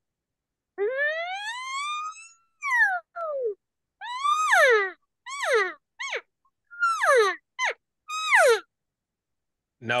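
Latex diaphragm elk call, a mouth reed held on the tongue, blown to make elk calls: first one long tone rising steadily in pitch, then about eight short mews, most of them falling in pitch.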